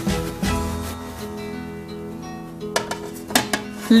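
Background music on acoustic guitar: plucked and strummed notes ringing on, with a few sharper strums near the end.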